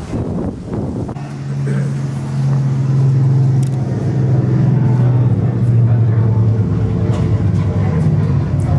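A steady low drone with an even pitch sets in about a second in and grows louder. Before it, wind noise on the microphone.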